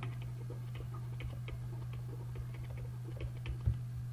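Faint, irregular ticks of a stylus tapping on a drawing tablet as words are handwritten, over a steady low hum.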